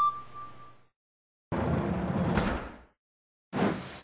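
Plastic toy turntable being rotated by hand with a die-cast engine on it: a scraping rumble lasting a little over a second, starting and stopping abruptly.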